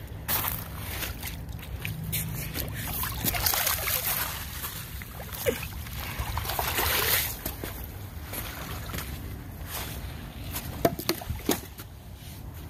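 Small waves lapping and sloshing at the edge of shallow lake water, swelling twice, over a steady low rumble; a few sharp clicks near the end.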